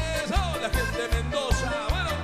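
Live cuarteto band playing: bass and drums keep a steady, driving beat under a lead line that slides up and down in pitch.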